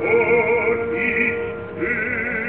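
Operatic singing in German with wide vibrato over an opera orchestra, from a narrow-band 1933 live recording. The voice holds sustained notes, dips briefly near the end, then comes back in.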